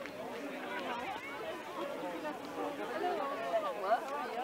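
Indistinct chatter of several people talking at once, their voices overlapping.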